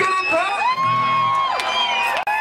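Live rock band playing, guitars to the fore, with notes bending up and down before settling into a held note. This is the instrumental opening of the song, before the vocals come in.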